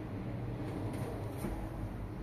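Old Schindler two-speed traction elevator car in travel: a steady low hum of the car running, heard from inside the cab. A couple of short clicks come about a second in.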